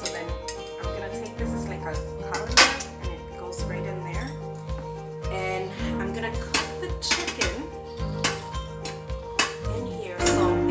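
Stainless steel pots clanking and knocking as they are handled and stacked, with the sharpest clank about two and a half seconds in. Later there is clinking and scraping as chicken pieces are tipped from a glass bowl into the pot. Background music plays throughout.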